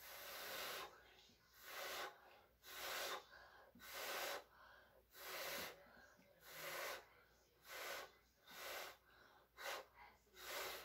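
A person blowing through the mouth onto a puddle of acrylic pouring paint in about nine separate puffs, roughly one a second, with quick breaths in between, pushing the paint outward into a bloom.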